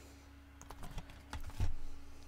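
Plastic DVD and Blu-ray cases being handled: a scattering of light clicks and taps, the loudest cluster about a second and a half in.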